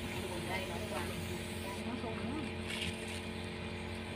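A steady low mechanical hum, like a motor or engine running, holding one pitch throughout, with faint voices behind it.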